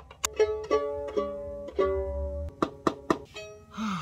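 Violin strings plucked by hand one after another, each note ringing on, then a few short sharp plucks near the end. The violin is still buzzing, a fault that turns out to come from its bass bar working loose.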